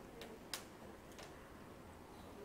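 Faint room tone with a few light clicks, the clearest about half a second in.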